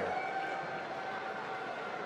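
Steady background noise of a busy competition hall during a pause in the commentary, with no distinct event.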